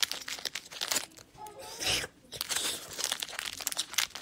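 Close crinkling and crackling handling noise near the microphone: many small irregular clicks, with a brief low bump about two seconds in.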